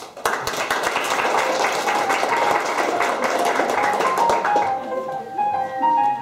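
Audience applause breaks out suddenly, fills the room for about four and a half seconds, then thins out as two-piano playing resumes with a string of clear, bright notes near the end.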